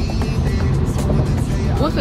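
A car driving at highway speed: steady road and wind noise, with music playing over it and a voice near the end.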